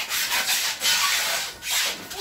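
Rubbing, scraping noise in two stretches, with a short break about one and a half seconds in.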